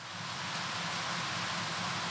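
Shower running: a steady hiss of falling water that swells in over the first half second and then holds even.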